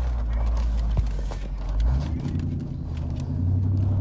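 Low, steady rumble of a car heard from inside the cabin, its pitch shifting about halfway through.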